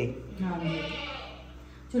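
A goat bleating once, a single drawn-out call that fades away.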